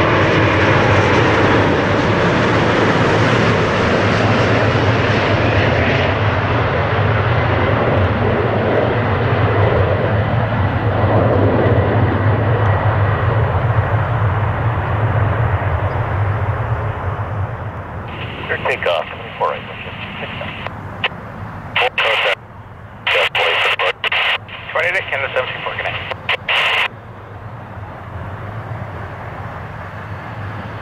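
Boeing 787 Dreamliner jet engines loud and steady as the airliner comes in low to land and touches down, fading after about 17 seconds as it rolls out down the runway. In the second half, short bursts of air-traffic-control radio chatter from a scanner cut in and out.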